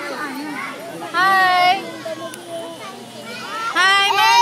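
A toddler's high-pitched calls: one short call about a second in and another starting near the end, over the mixed chatter of people around.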